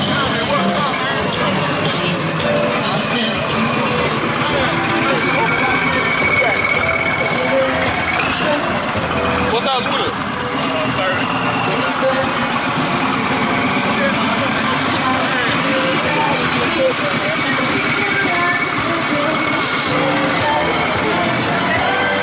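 Hip-hop music with rapped vocals and crowd voices, with a custom bagger motorcycle's engine running underneath.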